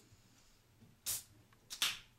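Soda can being opened: two short hisses of escaping gas, about a second in and again near the end.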